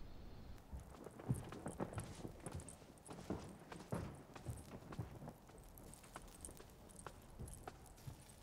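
Faint, irregular knocking steps, several a second for about five seconds, then thinning out to a few scattered knocks.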